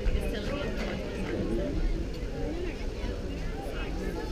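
Indistinct chatter of several voices, spectators and players talking over one another, with a steady low rumble underneath.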